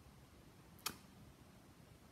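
Near silence: quiet room tone, broken once just before a second in by a single short, sharp click.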